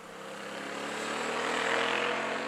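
A motorcycle rides past and away. Its engine note rises slightly in pitch over road and wind noise, and it is loudest near the end of the pass.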